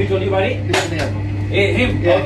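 People talking in the background, with a single sharp clack of tableware a little under a second in, over a steady low hum.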